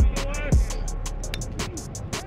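Hip hop backing track: a deep kick drum that drops in pitch hits twice, at the start and about half a second in, over quick steady hi-hats and a curving vocal or synth line.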